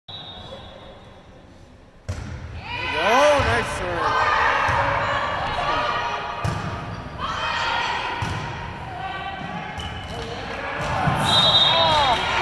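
Volleyball rally in an echoing gym: a short, sharp hit just after two seconds, then more sharp ball contacts through the rally, with players and spectators shouting and cheering throughout. A high steady whistle sounds at the very start and again near the end as the point is called.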